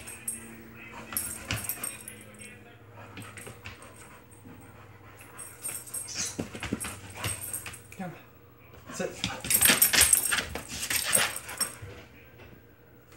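Pit bull whining with a thin steady tone for the first couple of seconds, then scuffling and mouthing at a person's hand in play. Bursts of rustling and clattering come twice, loudest near the end.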